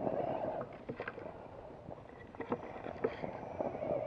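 Axial Wraith RC rock crawler's electric motor and gears whining in short spurts as it climbs over rock, with the tyres and chassis knocking and scraping on the stone.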